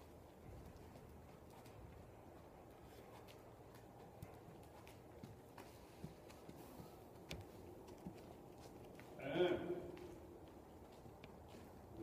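Faint, muffled hoofbeats of a horse moving on the sand footing of an indoor riding arena, with a few scattered light clicks.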